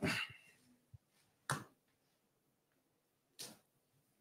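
Three short knocks and clicks of handling noise as a person gets up from a desk and moves things on it. The first is the loudest.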